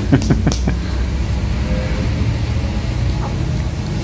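Plastic water bottle cap being twisted open: a quick run of sharp clicks and crackles in the first moment. A steady low hum runs underneath.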